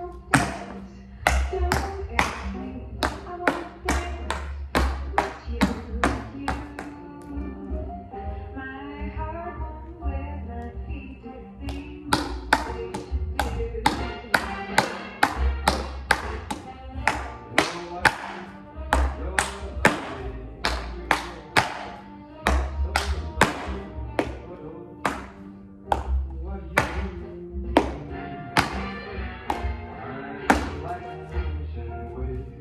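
Tap shoes striking a hard studio floor in a rhythmic tap routine, danced over recorded music with a steady beat. The taps thin out for a few seconds about a third of the way in, leaving mostly the music.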